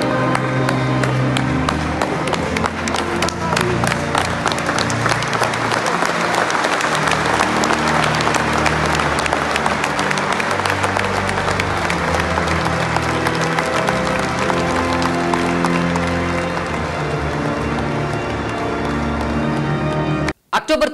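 Music of long held notes with applause; the clapping builds up a few seconds in, is loudest around the middle and thins out in the later part.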